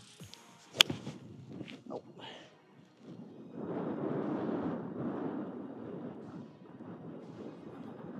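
A single sharp crack of a golf club striking the ball from a sandy waste-area lie, about a second in. A couple of seconds later comes a longer rushing noise lasting about three seconds.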